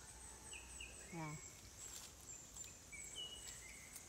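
Quiet rural outdoor ambience with faint high-pitched chirps repeating about twice a second, and a short falling hum from a woman's voice about a second in.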